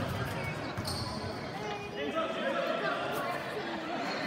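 A basketball being dribbled on a gym's hardwood floor, bouncing repeatedly, with voices in the hall behind it.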